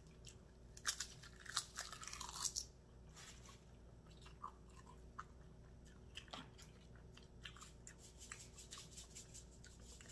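Close-miked chewing of a mouthful of spicy instant noodles: faint, irregular wet mouth clicks and smacks, busiest about two seconds in.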